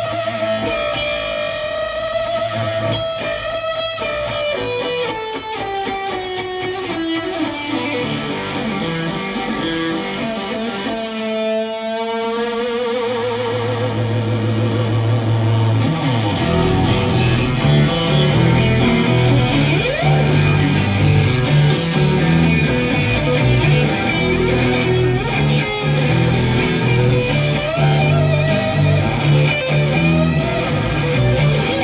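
Live electric guitar played through an amplifier in an instrumental passage of a rock song: long held notes slide downward, then a wavering, warbling stretch follows about twelve seconds in. About halfway through a fuller, heavier low end comes in and the music gets louder.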